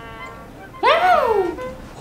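Background music, then about a second in a single high squeal-like call that sweeps up in pitch and falls back, lasting under a second.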